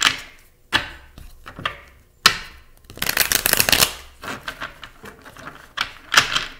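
Tarot cards being shuffled by hand: short bursts of rapid card clicks, the longest run about three seconds in, with a few sharp single clicks between.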